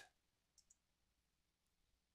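Near silence: faint room tone, with two very faint short ticks a little over half a second in.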